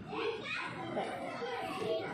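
Children's voices talking and chattering.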